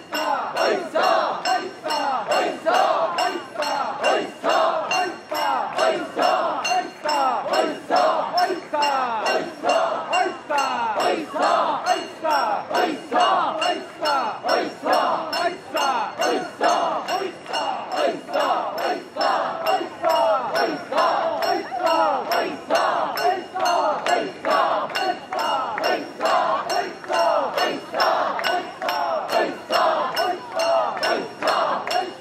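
Many mikoshi bearers shouting a rhythmic carrying chant together as they heave the portable shrine. The chant is punctuated by sharp clinks about twice a second that keep in time with it.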